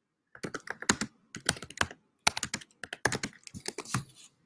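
Typing on a computer keyboard: quick runs of key clicks in about four bursts, with short gaps between.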